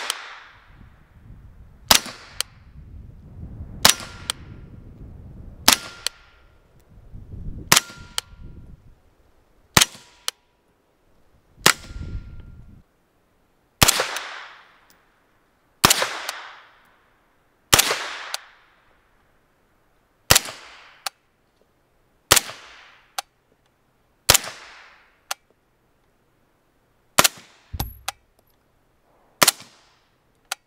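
Suppressed 9mm shots through a KGM SMG9 suppressor, fired one at a time about every two seconds from a CZ Scorpion and then a POF MP5, about fifteen shots in all. Each shot is a sharp report followed by a quick metallic click of the action cycling and a short echo. The loads are a mix of supersonic 115-grain and subsonic 145- and 165-grain rounds.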